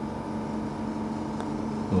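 Steady electric machine hum with a constant low tone and a fainter higher tone over a light hiss, unchanging throughout, with one faint click about halfway through.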